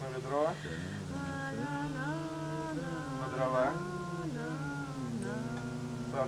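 A woman's voice singing a slow, unaccompanied tune in long held notes that step up and down.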